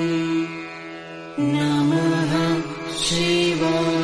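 Devotional mantra chanting sung over a steady drone. A long held note fades for about a second, then the voice comes back in at a new pitch with the next phrase, with a brief hissing consonant near the end.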